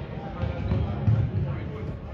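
Players' running footsteps thudding and scuffing on a sports hall floor, with distant voices calling, all echoing in the large hall.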